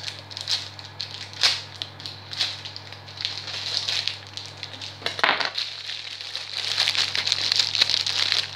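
Plastic wrapping on a pack of garlic bread baguettes crinkling and rustling as it is handled and cut open with a knife, with a few sharper rustles early on and denser crinkling over the last second or two.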